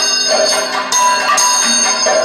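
Bell-metal percussion of a Kathakali ensemble, struck in a steady rhythm about once or twice a second. Each stroke leaves a long, ringing metallic tone.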